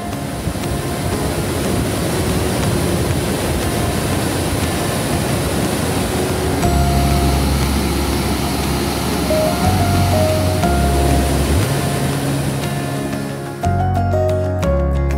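Rushing white water of the Tahquamenon River's Lower Falls, a steady wash of noise, mixed with background music; deeper bass notes of the music come in about halfway.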